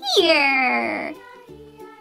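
A single squeaky, cry-like sound falls in pitch over about a second. After it, the bouncy backing music of a children's song plays alone.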